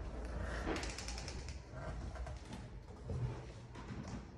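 A wooden door creaks and clicks as it is pushed open, and steps sound on a hardwood floor, with a quick run of clicks about a second in.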